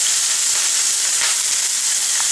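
Freshly added chopped onions sizzling in hot oil in a frying pan: a loud, steady, high hiss.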